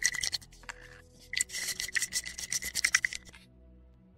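Close scratchy rubbing and scraping right at the microphone, in two spells with a short gap after about half a second, stopping shortly before the end: handling noise from hands and a small object brushing against the camera.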